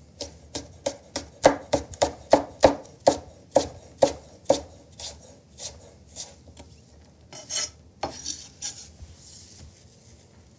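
Chef's knife chopping an apple on a wooden cutting board, about three chops a second, slowing after about five seconds. Near the end come two short scraping sounds of the knife across the board.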